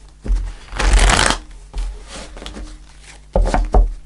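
A deck of tarot cards shuffled by hand, with a long rustling pass about a second in and two sharp card slaps near the end.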